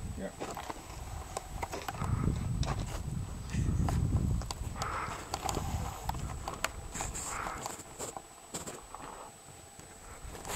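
Gusts of wind rumbling on the camera's microphone, with scattered sharp clicks and faint voices in the background.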